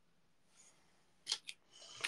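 Faint handling noise: two sharp clicks a little over a second in, then a rustle, as things on a bathroom counter are picked up.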